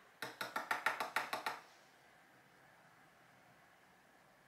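A quick run of about ten light, sharp taps on a hard object in under a second and a half, each with a short ring, then nothing. The tapping comes while handling makeup during loose-pigment eyeshadow application.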